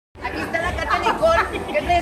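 Only speech: people talking.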